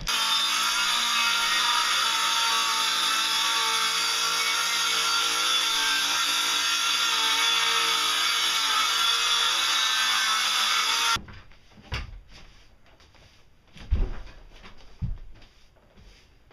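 Power saw running steadily as it cuts through plywood, stopping suddenly about eleven seconds in. This is followed by a few separate knocks.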